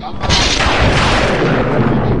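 Thunderclap sound effect: a sudden loud crash about a quarter second in that carries on as a long, noisy rumble.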